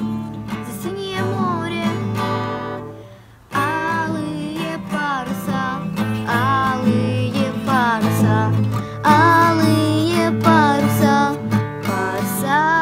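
A girl singing to her own strummed acoustic guitar, a beginner's playing of a Russian song, with a short pause about three seconds in before the strumming and singing pick up again.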